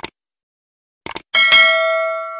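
Subscribe-button animation sound effect: a short click, a quick double click about a second later, then a bell chime that rings out and slowly fades.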